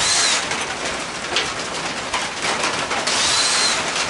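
Cordless drill/driver spinning in two short bursts, one at the start and one about three seconds in, each with a whine that rises and falls as the trigger is squeezed and let go, backing bolts out of a mower engine. There are light taps of the tool and parts in between.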